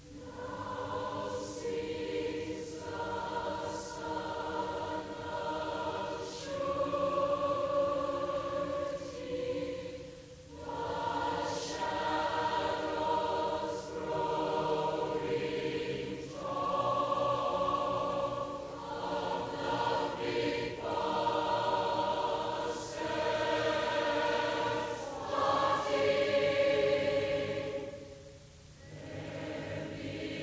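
A choir singing sustained chords in long phrases, broken by short pauses, the clearest about ten seconds in.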